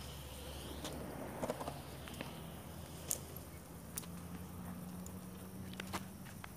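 Faint outdoor ambience: a low steady hum with a few scattered light clicks.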